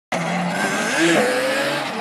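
Yamaha Banshee ATV's twin-cylinder two-stroke engine revving as the quad rides by, the engine note climbing about a second in.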